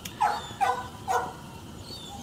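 A dog barking three times, the barks about half a second apart.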